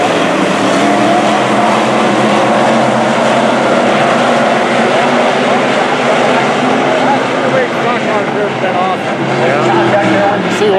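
A pack of dirt-track stock cars racing, several V8 engines running hard at once, their pitch rising and falling as drivers lift and get back on the throttle through the turns.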